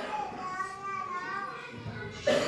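A faint, high-pitched voice speaking or calling in the background, with drawn-out, wavering tones.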